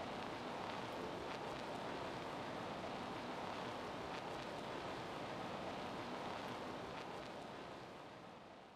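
Steady, faint hiss of an open microphone's background noise, with a few faint clicks, tapering off near the end.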